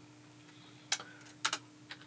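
A few sharp clicks from working a computer at a desk: one about a second in, a quick pair half a second later, and another near the end, over a faint steady hum.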